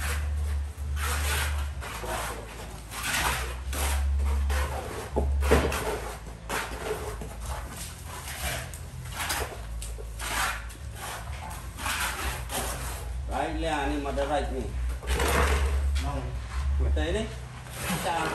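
Steel trowel scraping and spreading cement render over a brick wall in a run of short strokes, roughly one a second, with bursts of low rumble.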